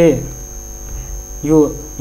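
Steady electrical mains hum running under the interview audio, with a thin high whine above it. A man's speech trails off at the start and a short word comes about one and a half seconds in.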